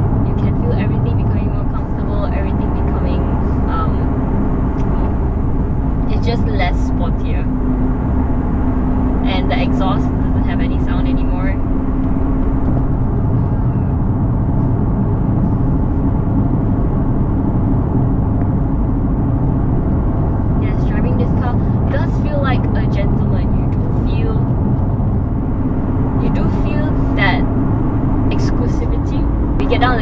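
Cabin noise of a 2019 Aston Martin DB11 V8 cruising at a steady speed: its 4.0-litre twin-turbo V8 runs with an even low hum, under road and tyre noise.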